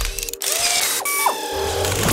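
Show intro sting: music mixed with mechanical clicking and ratcheting sound effects and short sliding tones, with a low bass coming in about halfway.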